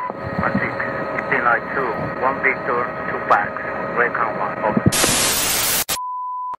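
Radio chatter: thin, narrow-band voices with no clear words over hiss, with a faint steady tone under them. Near the end comes about a second of loud white-noise static, like a tuned-out TV, which cuts off suddenly.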